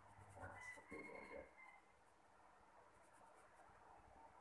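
Near silence: a paintbrush dabbing watercolour on paper, with a faint, brief sound in the first two seconds.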